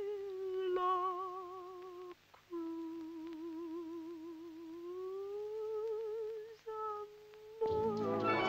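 A woman's solo voice humming long, held notes with a wide vibrato, unaccompanied, breaking off briefly twice. Near the end an orchestra comes in.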